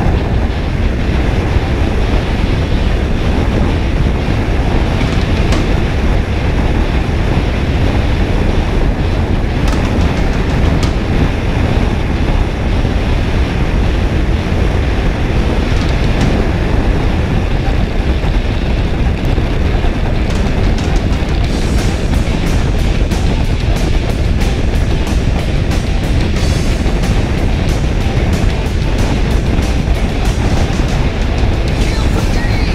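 Background music over the steady rush of wind and road noise from a motorcycle riding at highway speed.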